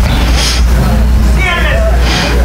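A man's voice over a church PA in a pause of his preaching: a breath-like hiss about half a second in and a short voiced sound near the end. A steady low rumble runs under it the whole time.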